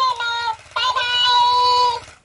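High-pitched, chipmunk-like singing voice from a plush talking-hamster toy: a short note, a brief dip, then a longer held note from about three-quarters of a second in.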